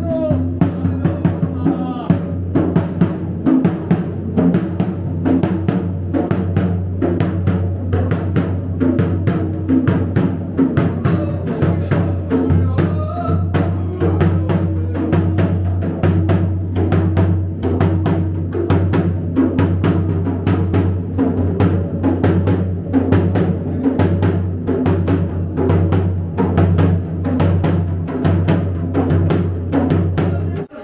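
A dhol, a rope-tensioned barrel drum, beaten with a stick in a fast, steady rhythm over a continuous low hum.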